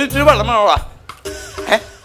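Spoken stage dialogue, two short phrases, over background music.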